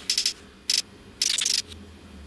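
A measuring spoon scraping and clicking against the inside of a ceramic mug of dry powder, in a few short, sharp bursts, some of them with a rapid stutter.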